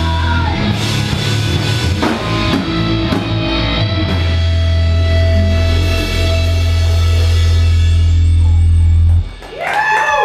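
Hardcore band playing live through amplifiers: distorted electric guitars, bass and drums. The song ends on a long held chord that rings for several seconds and stops abruptly about nine seconds in.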